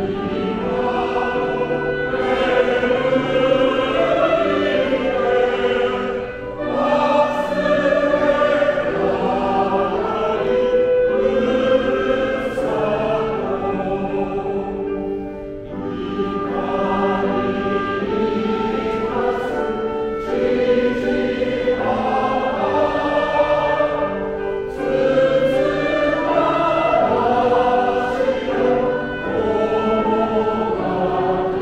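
Elderly men's choir singing in harmony, holding long notes in phrases with brief breaks about 6, 15 and 25 seconds in.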